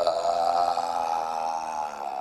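A long, drawn-out human burp, one sustained belch of almost two seconds at a nearly steady pitch, done as a comic gag.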